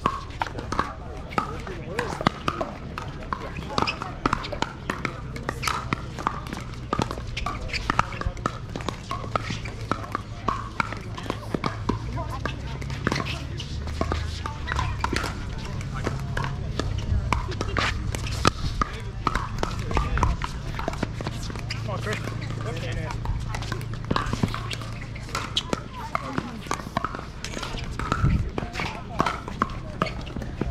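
Pickleball paddles hitting a plastic ball during a doubles rally: sharp pops at irregular intervals, mixed with scuffing footsteps on the hard court and a steady murmur of players' voices from the surrounding courts.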